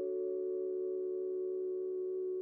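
Intro music: a chord of several steady tones held unchanged, fading very slightly.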